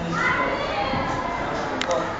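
People's voices, speaking or calling out at a normal level, with a sharp double click just before the end.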